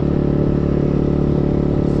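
Icebear Maddog 150 scooter's GY6-type 150cc four-stroke single running under way at a steady engine speed, heard from the rider's seat. It is running with the air filter in its first test position and a 110 main jet.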